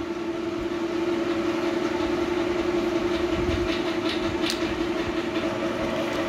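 A steady drone at one held pitch with fainter overtones above it, over a low rumbling background.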